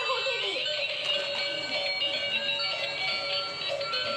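Tinny electronic tune from the built-in sound chip of light-up battery toy cars, with a gliding sound-effect sweep about half a second in.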